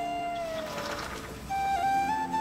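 Background music: a flute melody of held, ornamented notes over a steady drone. A long note slides gently downward in the first second and a new note begins about one and a half seconds in.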